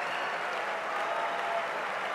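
Dinner audience applauding steadily, many hands clapping together.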